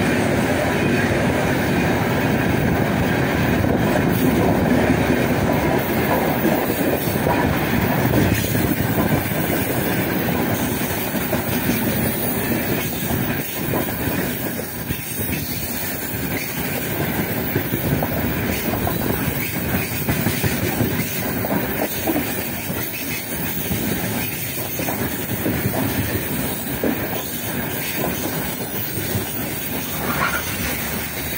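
Heavily loaded freight train of open-top gondola wagons rolling past close by, the wheels clicking steadily over the rail joints with some wheel squeal, easing off slightly over the stretch.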